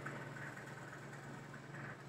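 Faint steady low hum with a light even hiss: room tone.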